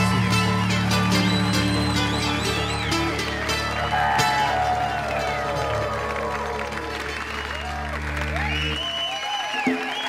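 A didgeridoo drones low under a held band chord at the end of a song. The drone stops about nine seconds in, while the audience cheers, whistles and applauds.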